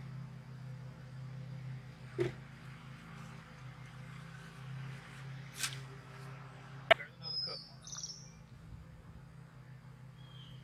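Faint sounds of a potato fork being worked through wet soil, a few scrapes and a sharp knock just before seven seconds, under a low steady hum. A bird chirps a couple of times right after the knock.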